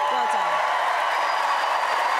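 Studio audience applauding and cheering, a steady crowd noise with a voice or two calling out at the start.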